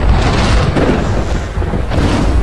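Thunder sound effect: a loud, sustained rumble of thunder with a hiss over it, swelling slightly now and then.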